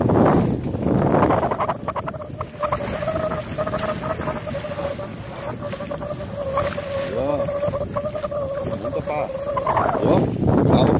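Wind rushing over the microphone aboard a sailing yacht under way. From about a second and a half in, a steady mid-pitched hum runs underneath, with a brief warbling sound about seven seconds in.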